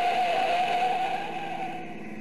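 Radio-drama sound effect of a speeding car going off the road at a curve: a long, wavering tire squeal over engine noise that dies away near the end.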